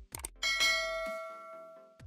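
A single bell strike about half a second in, ringing out and fading over the next second and a half, over background music with a kick-drum and hi-hat beat.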